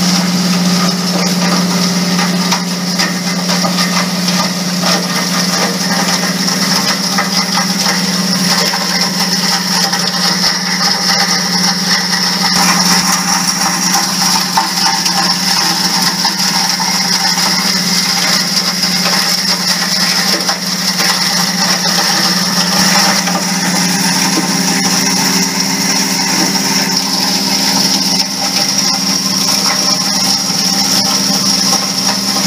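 Hammer mill running with a steady hum and a continuous dense rattle as scrap circuit boards fed into it are crushed, the wet shaker table working alongside.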